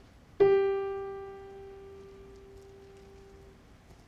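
A single piano note, struck once about half a second in and left to ring, fading away over about three seconds.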